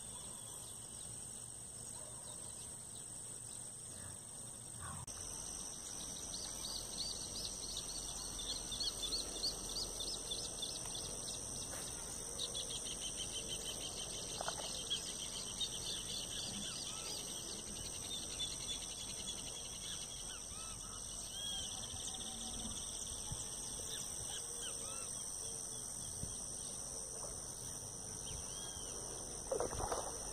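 Steady high-pitched insect buzzing with a bird singing rapid chirping phrases, busiest between about 7 and 16 seconds in. A short louder noise comes right at the end.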